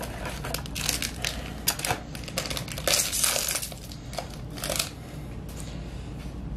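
Plastic wrapper of a trading card booster pack crinkling in several irregular bursts as it is torn open and the cards are pulled out.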